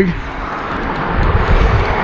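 Wind buffeting the camera microphone: a steady rush with a low rumble that grows stronger about halfway through.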